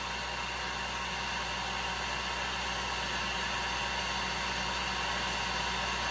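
Electric heat gun running steadily: a constant blowing hiss with a faint high whine.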